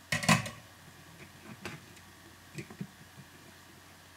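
Clicks and light knocks of a small circuit board being handled and turned over on a workbench: a sharp cluster at the start, then a few fainter, separate ticks.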